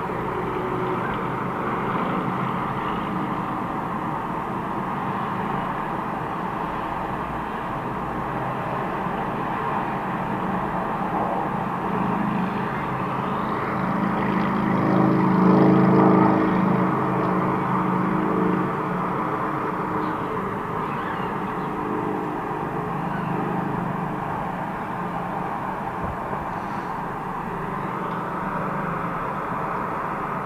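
Steady highway traffic: cars and trucks passing at speed, tyres and engines blending into a continuous noise. About halfway through, a heavy truck passes close by, and its engine and tyres build to the loudest point and then fade.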